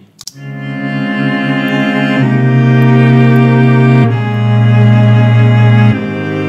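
A stock Apple Loop playing back in Logic Pro: music of sustained low notes in chords, swelling in over the first second, then changing to a new chord about two seconds in and again about four seconds in.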